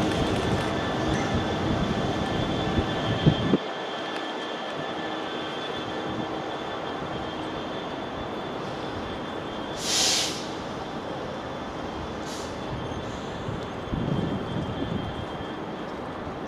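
Class 66 diesel locomotive running light and drawing away, its engine and wheel rumble loud at first and dropping off suddenly about three and a half seconds in, then fading to a faint steady running noise. A short hiss comes about ten seconds in.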